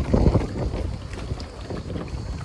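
Wind buffeting the phone's microphone: an uneven low rumble, strongest in a gust in the first half second.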